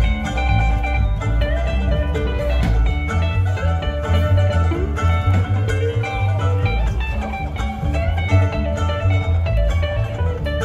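Live string band playing an instrumental passage: upright double bass plucking steady bass notes under a mandolin and electric guitar picking the melody.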